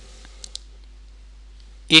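Two light, sharp clicks in quick succession, about a tenth of a second apart, over a low steady room hum.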